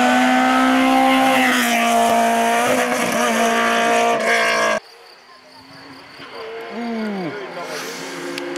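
Rally car engine held at high, steady revs as the car comes through, then a sudden cut about five seconds in to a much quieter car engine approaching, its revs dropping briefly and building again near the end.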